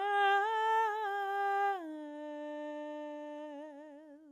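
A woman's solo voice singing unaccompanied, holding notes on one syllable. About two seconds in it steps down to a long low final note that takes on a widening vibrato and fades away.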